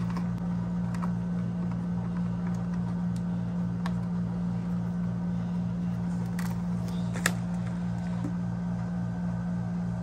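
Plastic helmet chin mount being fitted onto a full-face motorcycle helmet by hand: a few light clicks and knocks, the sharpest about seven seconds in, over a steady low hum.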